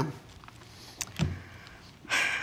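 A pause with quiet room tone, broken by a single sharp click about halfway through and a brief low sound just after it.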